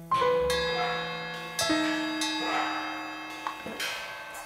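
Sparse jazz piano notes, struck one at a time about five times and each left to ring and fade.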